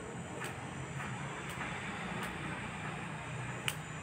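Scissors snipping hair a few times at uneven intervals, the loudest snip near the end, over a steady low background hum.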